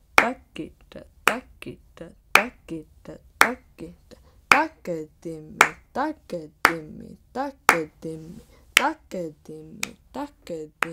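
Konnakol: a woman's voice reciting the Karnatic drum-syllable phrase takadimi in a quick, even rhythm, with a sharp hand clap about once a second marking the accent. The four-syllable phrase runs across beats divided into three, a 4-against-3 cross-rhythm.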